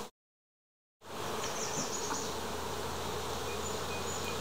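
Dead silence for about the first second, then the steady hum of a honeybee colony buzzing in unison over open frames of comb.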